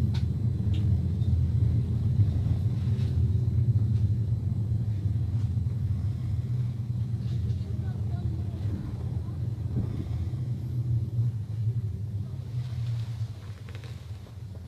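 Steady low rumble of a vehicle in motion, easing off near the end.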